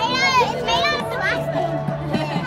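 Young children's high-pitched, excited voices calling out, loudest in the first second and a half. Steady background music plays underneath.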